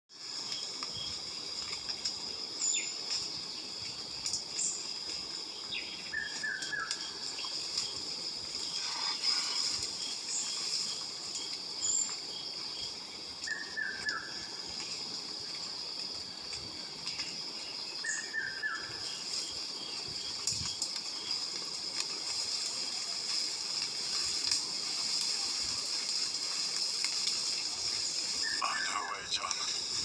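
Tropical forest ambience played back through a screen's speaker: a steady high insect drone, with a bird giving a short falling call three times and a few brief high chirps.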